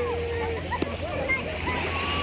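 Shallow sea water splashing and lapping around people wading, with distant chatter of other bathers and a low steady hum underneath.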